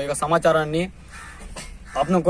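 A man speaking for about the first second, then a pause of about a second with faint background noise before his speech resumes.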